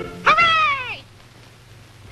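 A cartoon character's short, meow-like cry that glides down in pitch and lasts under a second.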